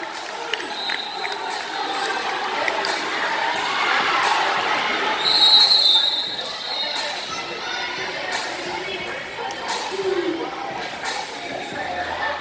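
Crowd chatter and general noise in a large, echoing hall, with scattered thumps, and a short high whistle about five seconds in.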